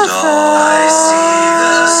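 A woman singing a long held note of a hymn over a karaoke backing track.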